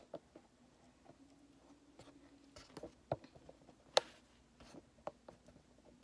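Scattered light clicks and taps of kitchen handling, with one sharper click about four seconds in.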